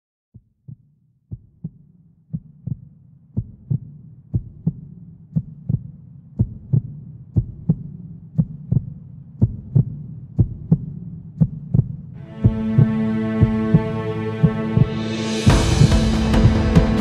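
A heartbeat sound effect opening an instrumental track: a double beat about once a second, starting softly and growing louder. A steady held synth tone comes in about twelve seconds in, and fuller music enters just before the end.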